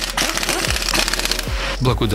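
Cordless impact wrench with a 17 mm wheel socket hammering a wheel bolt tight, a fast rattle that stops shortly before the end, with background music under it.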